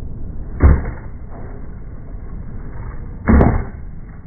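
Skateboard on concrete: two hard clacks of the board striking the concrete, about two and a half seconds apart, over the steady rumble of its wheels rolling.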